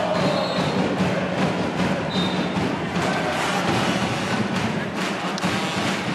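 Home crowd in a basketball arena with the fans' drum band playing: a steady mass of crowd noise with drumbeats knocking through it, and two brief high tones near the start and about two seconds in.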